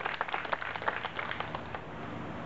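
Audience applauding with many hands, the claps thinning out and dying away near the end.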